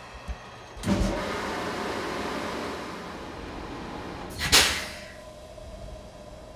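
A JR West 223 series electric train standing at the platform after stopping, its air equipment venting: a sudden hiss of compressed air about a second in that fades over a few seconds, then a second, shorter and louder burst of air near the end.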